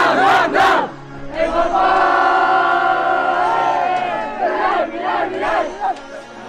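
A group of teenagers shouting a team cheer together from a huddle: a couple of quick shouts, then one long shout held by many voices for about two seconds, then more short yells near the end.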